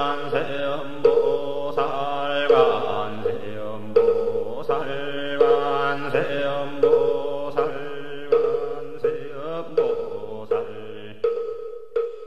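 Zen Buddhist chant: voices sing a mantra-like line over a steady beat of struck percussion, about one strike every 0.7 seconds. Near the end the voices stop and the strikes carry on alone, fading out.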